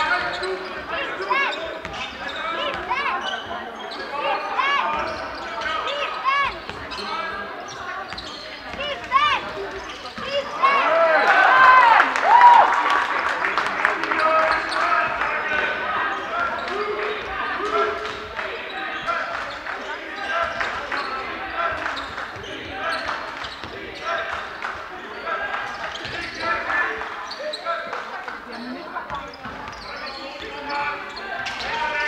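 Basketball game on a hardwood gym floor: a basketball bouncing as it is dribbled and sneakers squeaking on the boards, over shouting from the crowd and players in the echoing hall, which swells about 11 to 14 seconds in.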